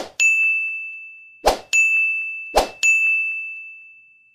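Button pop-in sound effects: three times a short pop followed by a bright ringing ding that fades, the pairs about a second and a quarter apart, the last ding dying away near the end.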